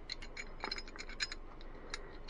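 Faint light metallic clicks and scrapes of the recoil spring being worked out of a SCCY CPX-1 9mm pistol's slide by hand during a field strip.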